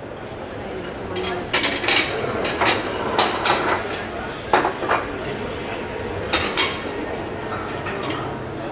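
Indistinct background voices with a string of sharp clinks and knocks, most of them between about one and seven seconds in.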